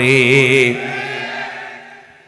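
A man's voice chanting a drawn-out word through a microphone in the sing-song melodic delivery of a waz sermon. The note is held on one steady, slightly wavering pitch, loud at first, then softer and fading away toward the end.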